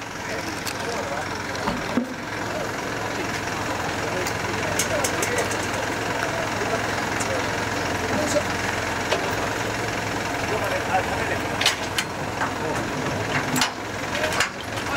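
Several people talking at once, with no clear words, over a steady low engine idle. Scattered light clicks and knocks run through it.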